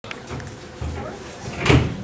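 Low steady hum inside a stationary train's cab, with one loud thump and rustle near the end as something brushes over the camera.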